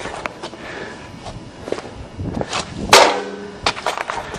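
A dehumidifier pan being handled: scattered light knocks and clicks, with one louder knock about three seconds in that rings briefly.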